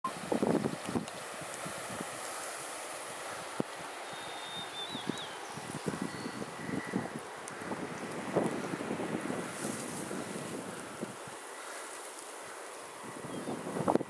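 Wind on the microphone with rustling and scattered light knocks, and a brief faint high chirp about four seconds in.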